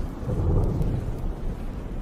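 Wind buffeting the microphone of a camera on a moving motorcycle: an irregular low rumble mixed with the bike's running noise.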